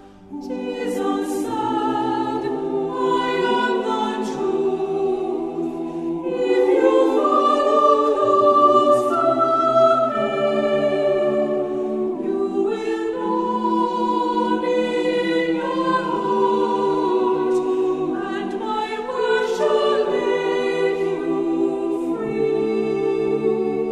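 Choir singing a hymn in several voices, starting right after a brief pause.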